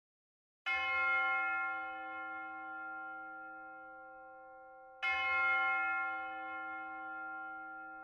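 A bell struck twice, about four seconds apart, each stroke ringing out and slowly fading.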